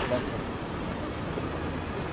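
A car's engine running low and steady as the car rolls slowly past close by, with a murmur of voices around it.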